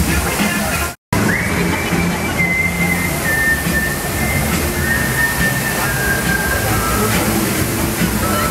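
Music playing with a musical fountain show, carrying a long high note that steps slowly downward, over the steady rush of the fountain's water jets and crowd voices. The sound cuts out briefly about a second in.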